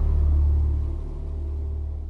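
Deep, steady low rumble of a cinematic bass drone under the music, fading gradually from about a second in.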